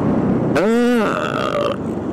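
A man's drawn-out "ehh" hesitation about half a second in, with a steady higher tone sounding alongside it for about a second, over steady wind and road noise on a Yamaha NMAX 155 scooter rider's microphone.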